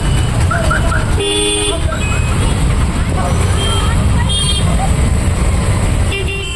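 Street traffic running through a flooded road: a steady rumble of engines, with a vehicle horn honking for about half a second a little over a second in, and a shorter honk past four seconds.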